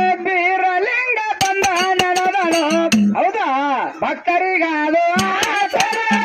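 Kannada folk singing (dollina pada): a man's voice sings through a microphone with wavering, ornamented pitch bends. Small hand cymbals clink sharply and often, with a few drum strokes underneath.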